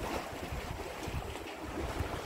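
Wind buffeting the phone's microphone with a low, uneven rumble, over the wash of sea water against a rocky shore.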